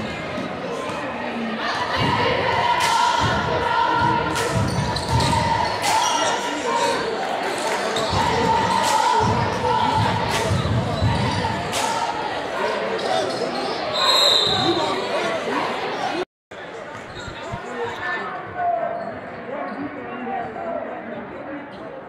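Basketballs dribbling on a hardwood gym floor during a game, with sharp bounces echoing in a large hall over a crowd's voices. A brief high squeak comes about 14 seconds in, and the sound cuts out for a moment about two seconds later.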